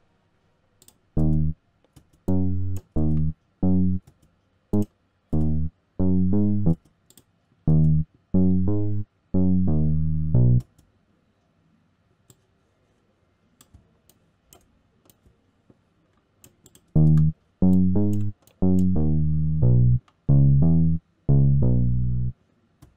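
Single low acoustic-bass notes from the BassAcoustic instrument in FL Studio's piano roll, sounding one at a time as notes are placed and auditioned, with mouse clicks between them. The notes come in two runs, with a pause of about six seconds near the middle.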